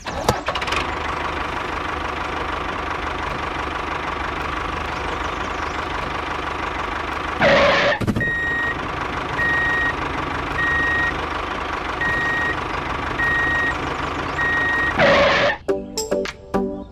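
A steady engine-like running sound throughout, with a sweeping whoosh about halfway through and again near the end. After the first whoosh, a high beep repeats a little more often than once a second, like a vehicle's reversing alarm.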